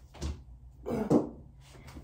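Two brief wordless vocal sounds from a woman, short grunts or exhalations of effort during a mock overhand axe throw. The first is just after the start; the second, stronger and pitched, comes about a second in.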